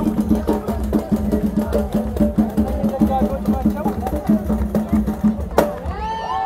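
Capoeira roda music: a tall hand drum beating a steady pulse about twice a second, with clacking percussion and voices singing over it. A single sharp knock stands out shortly before the end.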